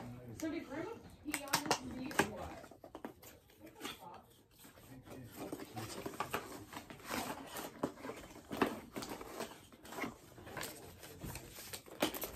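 Gift packaging being torn open and handled, crinkling and rustling in quick, irregular crackles.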